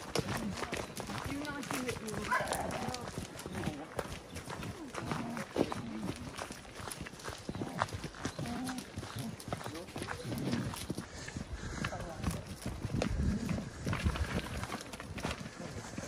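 Footsteps of several hikers walking on a damp dirt trail strewn with fallen leaves, an irregular patter of steps.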